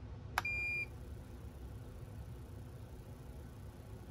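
MarCum M3 ice-fishing flasher powering on: a click, then a single steady high-pitched beep lasting about half a second, a little under half a second in.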